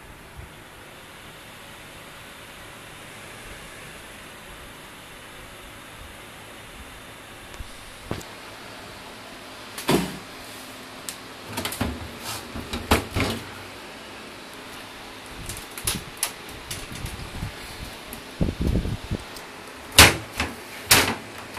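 Steady whir of a gaming PC's many case fans, joined in the second half by a run of irregular knocks and clatters.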